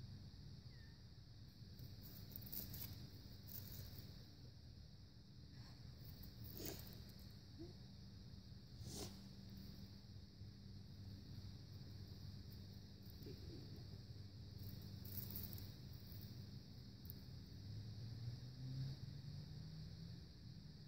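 Very quiet outdoor ambience: a faint steady hiss and low hum, with a handful of soft clicks and rustles, the clearest about seven and nine seconds in.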